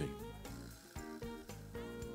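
Instrumental background music: a melody of short, separate notes, several a second, each starting sharply and fading away.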